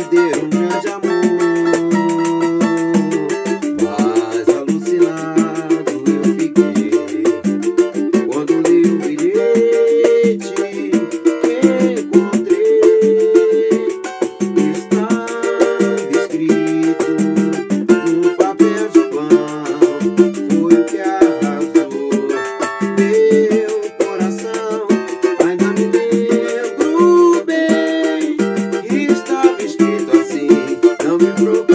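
Cavaquinho playing a moving melody of plucked and strummed notes, accompanied by a pandeiro keeping a steady rhythm of slaps and jingles.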